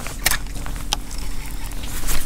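Low rumble of wind on the microphone, with a faint steady hum under it and two short clicks, about a quarter second and about a second in.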